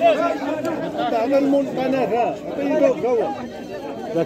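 Crowd chatter: several men's voices talking over one another, none standing out.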